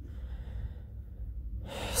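A low steady hum, then a quick in-breath near the end, just before speech resumes.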